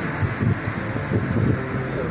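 Steady rumble of road traffic with wind buffeting the microphone in irregular low gusts.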